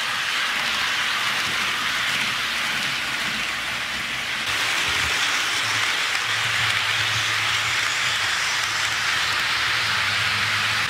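HO scale model train cars rolling along the track, a steady hiss from the wheels on the rails. A low hum joins about six seconds in.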